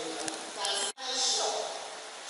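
Speech: a woman lecturing into a microphone. The voice cuts out sharply for an instant about a second in, then carries on.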